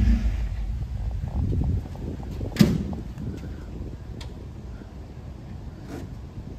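A low outdoor rumble that fades over the first two seconds, then one sharp knock about two and a half seconds in, followed by a few faint clicks.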